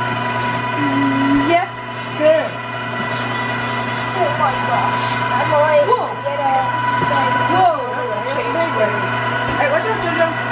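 LEM electric meat grinder running steadily, a constant motor hum and whine, as venison is pushed down the feed tube and ground. Voices of children and adults talk over it.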